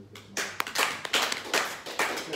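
Hand clapping: a run of quick, sharp claps starting about a third of a second in.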